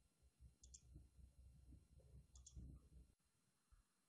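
Near silence, with two faint clicks about a second and a half apart.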